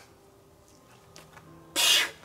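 A climber making a big move on a rock boulder: a short, loud scraping hiss near the end, over a quiet background.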